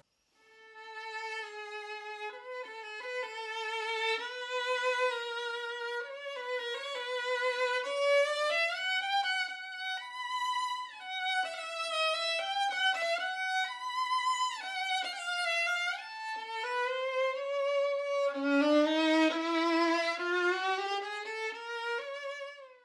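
Solo violin played with the bow: a slow melody of sustained notes with vibrato, climbing gradually in pitch. Near the end it moves into double stops, two notes sounding together, at its loudest.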